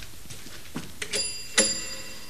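Doorbell chime: two ringing notes about half a second apart, the second louder and ringing on.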